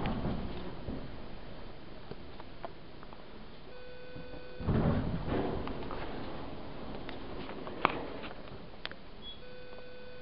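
Inside a hydraulic elevator cab: a steady tone sounds briefly about four seconds in and again near the end. A louder rumbling thud comes about five seconds in, and a few sharp clicks follow.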